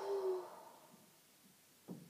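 A woman's breathy, voiced exhale, a short steady "hoo" that fades out within about a second, breathing out into a kneeling back stretch. A brief intake of breath near the end.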